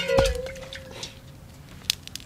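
A metal cooking pot clanks as it is handled at the campfire and rings on with a single steady tone that fades over about a second and a half. A sharp crack follows near the end.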